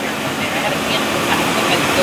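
Steady engine and road noise inside a van's cabin, with faint voices of other passengers in the background.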